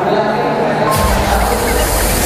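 Stage fog jet firing: a sudden loud hiss of gas and vapour bursts out about a second in and carries on steadily.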